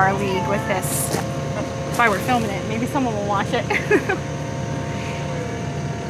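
An engine running steadily at idle, with people talking indistinctly over it.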